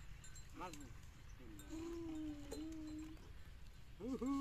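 A voice giving a short call that rises and falls about half a second in, then one long held call of nearly two seconds with a slight waver, over faint background noise.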